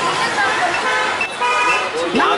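Busy market crowd chatter, with a vehicle horn sounding one held, steady note for about half a second near the end.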